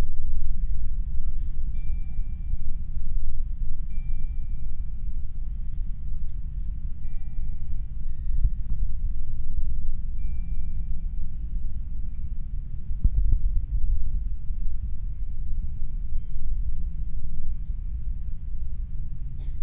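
A steady low rumble, with faint soft held notes coming and going, and a single sharp knock about 13 seconds in.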